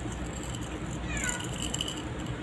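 A short animal call falling in pitch, about a second in, over a steady low background hum.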